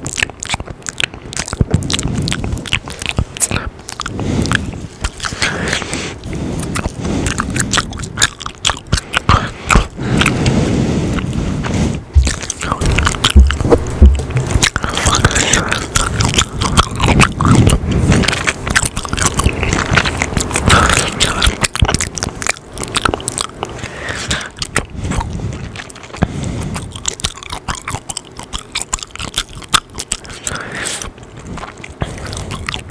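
Close-miked gum chewing and wet mouth sounds: a dense, irregular run of smacks and clicks, made right against the microphone.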